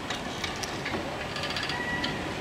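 Tethered passenger balloon's gondola being winched down onto its landing platform: a steady mechanical noise with faint light clicks and rattles from the winch and landing gear.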